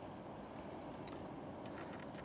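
Faint steady outdoor background noise, a low rumble with hiss, with a few faint clicks about a second in and again near the end.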